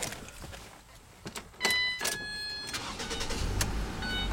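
Ignition key clicks, then a steady electronic chime from the dashboard, then the 2010 Ford Transit Connect's 2.0-litre four-cylinder engine starting near the end and running on at idle.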